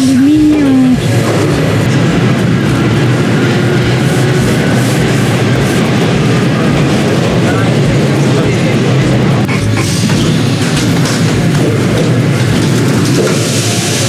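Metro train running, heard from inside the carriage as a steady loud rumble and rattle, with a few clicks about ten seconds in.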